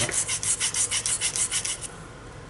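Rapid back-and-forth rasping of an abrasive scrubbed by hand on a scooter's brake parts, about six strokes a second, stopping just before the end.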